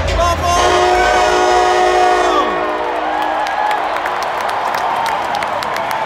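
A train horn blast over the stadium sound system: a chord of several steady tones starting about half a second in, held about two seconds, then sliding down in pitch as it dies away. Crowd noise and chanting carry on through and after it.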